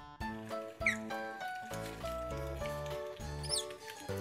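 Bright keyboard background music with two short, high squeaks from an Asian small-clawed otter, one about a second in and another near the end.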